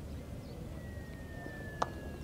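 Steady open-air rumble. About a third of the way in, a thin high tone starts and glides slowly down in pitch. Near the end comes one sharp click, the loudest moment.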